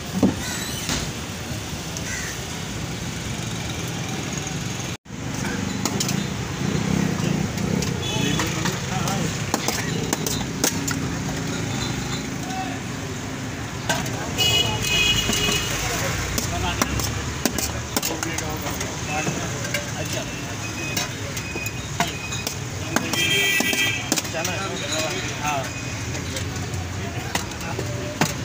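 Busy street-stall ambience: people talking in the background and traffic passing. Steel spoons click and scrape against steel trays and plates while chickpeas are served.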